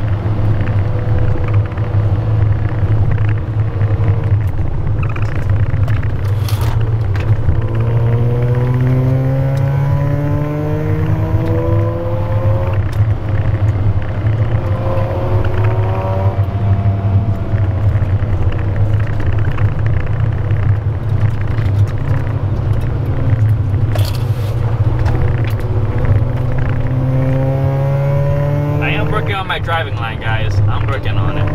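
A Mazda RX-8's two-rotor Renesis rotary engine heard from inside the cabin while driving. A steady low drone runs throughout, and the revs climb in rising pulls about eight to twelve seconds in and again near the end.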